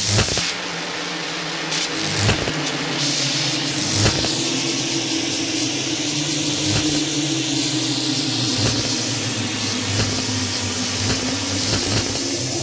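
Trailer-style sound design under an animated title: a steady low drone hum beneath a hiss, with a handful of sharp hits spaced a couple of seconds apart.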